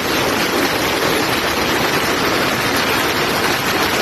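Steady rush of floodwater flowing over a village road after a cloudburst, a dense, even sound heard through a phone's microphone.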